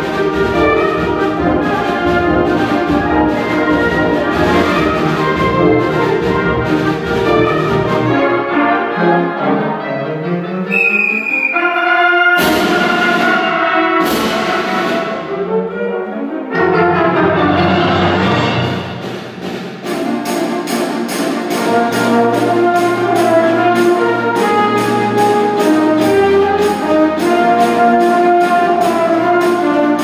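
High school wind ensemble playing a concert band piece, with brass to the fore over percussion. Near the middle come sliding pitches broken by two sharp crashes. The second half settles into a steady beat of regular percussion strokes.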